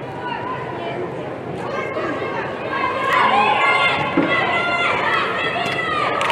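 Children's high voices shouting and calling across a large indoor football hall, growing louder about halfway through as a goal goes in.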